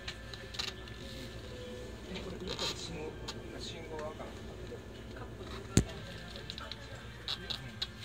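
Cabin noise of a moving Kintetsu limited express train: a steady low rumble with murmuring voices over it, and one sharp knock a little before six seconds in.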